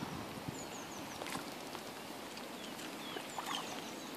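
Faint water sounds with a few light splashes from a hooked rainbow trout being played at the surface, and a bird chirping faintly in the background.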